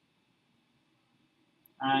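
Near silence: faint room tone, with a man's voice starting to speak near the end.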